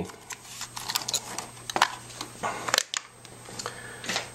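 Small objects being handled by hand on a work surface: a few light, irregularly spaced clicks and rustles.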